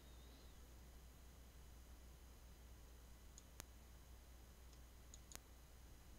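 Near silence: room tone with a steady low hum and two faint, sharp computer mouse clicks, about three and a half seconds in and again near the end, with a few fainter ticks around them.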